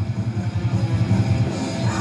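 Background metal music with electric guitars and drums playing steadily.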